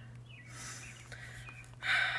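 A person's soft breathing, with a sharper intake of breath near the end, over a low steady hum.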